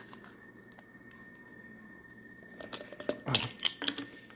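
After a quiet stretch, a quick cluster of hard plastic clicks and knocks near the end as PVC pipe fittings are handled and pushed together.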